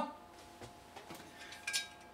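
Half of a Revere Ware copper-clad stainless steel skillet being picked up by its handle off a wooden cutting board: a few faint handling ticks, then a short metallic clink with a brief ring near the end. A faint steady hum lies underneath.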